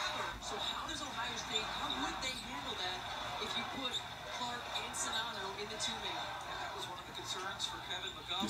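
A televised basketball game playing quietly: a commentator talking over a low haze of arena crowd noise.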